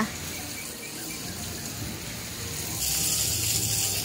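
Quiet outdoor background with a faint low hum. About three seconds in, a steady high hiss starts abruptly.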